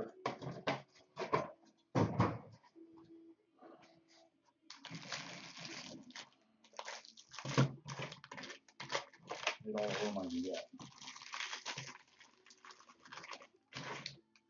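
Foil wrappers of baseball card packs being torn open and crinkled by hand, with cards handled and shuffled. There are two longer stretches of crinkling, about five seconds in and again about ten seconds in.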